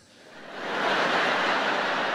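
A large audience laughing and applauding, rising quickly over the first second and then holding steady.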